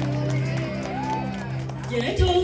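Live band music with held keyboard chords, and voices over it.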